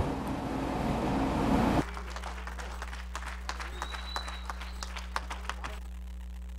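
A rising hiss-like noise that cuts off suddenly about two seconds in, followed by a steady electrical hum from a church sound system with scattered faint clicks. The hum comes before the system is fully powered up.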